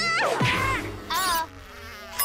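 Cartoon sound effects: warbling, buzz-like tones that glide up and down, with a short hiss about a second in.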